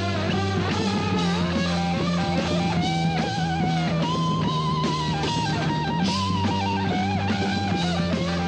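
Heavy rock music: an electric guitar plays a lead line of wavering, bent held notes over steady low notes and drums.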